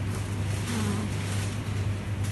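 Supermarket background sound: a steady low hum with faint store noise around it.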